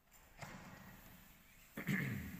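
A man's short wordless vocal sound near the end, after a soft noise about half a second in.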